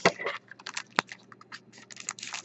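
Foil trading-card pack being handled, crinkling briefly at first, then scattered light clicks with one sharp click about halfway.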